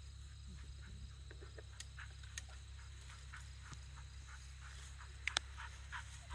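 Quiet open-field ambience: a steady low rumble with scattered faint, short chirps and ticks, and a couple of sharper clicks about five seconds in.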